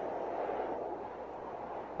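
Steady, soft rushing wind noise from the opening of a music video's soundtrack, over a shot of an aircraft above the clouds. It swells a little in the first half-second, then eases slightly.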